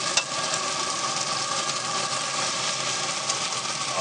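Chicken wings sizzling in a hot carbon steel skillet set over a pellet grill's fire pot, with a steady hum from the grill's fan under the sizzle. Metal tongs click once against the skillet a fraction of a second in.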